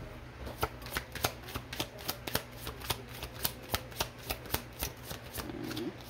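A deck of tarot cards being shuffled by hand: a quick, even run of card slaps, about four a second, starting about half a second in and stopping shortly before the end.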